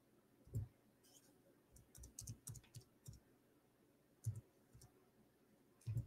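Faint, scattered clicking of a computer keyboard: a single click about half a second in, a short run of clicks around two to three seconds, and another near four seconds.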